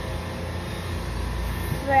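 A steady low rumble, with no clear pitch and no distinct events; a child's voice begins right at the end.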